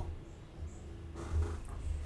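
A quiet pause between spoken sentences: a steady low hum with a soft, faint breath-like sound a little over a second in.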